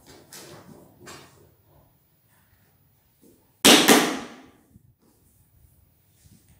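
A large porcelain floor tile is slid and pressed into a bed of fresh mortar, with brief scraping sounds near the start. A single loud, sharp knock comes a little past halfway and dies away within about half a second.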